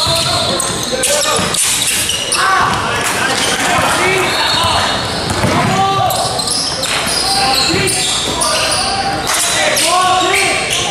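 Basketball being dribbled on a hardwood gym floor during live play, under constant indistinct voices of players and spectators echoing in a large hall.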